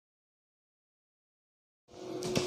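Silence: a blank audio track, with faint room noise fading in just before the end.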